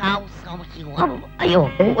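A man's voice speaking animatedly in short bursts over soft background music.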